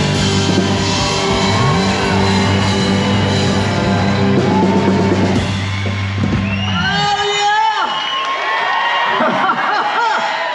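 A live rock band finishes a song on a long held chord with drums, which stops about seven seconds in; the audience then cheers and whoops.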